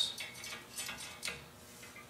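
A few faint ticks and light scrapes from a steel tape measure's blade moving against the rails of a welded steel bed-frame.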